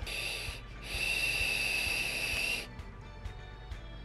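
A draw on a vape: air whistling and hissing through the tank's airflow while the box mod fires its mesh coil. A short pull, a brief break, then a steady pull of nearly two seconds, followed by a quieter breath out.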